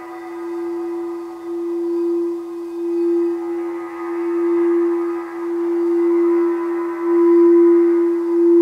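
Crystal singing bowl sung by circling a wand around its rim: one steady, sustained tone with shimmering overtones that swells and eases in slow waves and grows louder toward the end.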